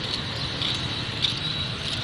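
Outdoor ambience: a steady, high-pitched chorus of insects over a low background rumble.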